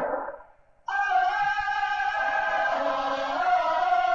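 Film score played back from a TV: the music fades out in the first half second, and after a brief near-silent gap sustained choir-like voices come in abruptly and hold long notes.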